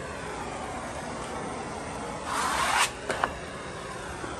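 Wallpaper rasping under a hand tool for about half a second, a little over two seconds in, followed by two light clicks, over a steady background hiss.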